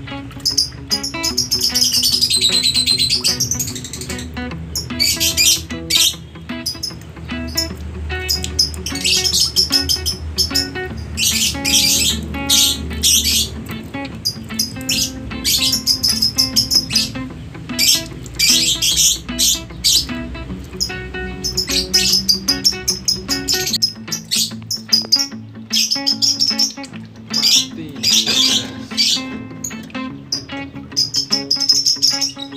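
Songbirds chirping in quick, high-pitched phrases again and again over background music that holds steady low notes.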